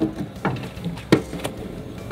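A few short knocks and clunks of someone climbing onto a Zamboni ice resurfacer in skates with blade covers: steps on its metal steps and a grab at its handle and seat. The loudest knock comes just over a second in.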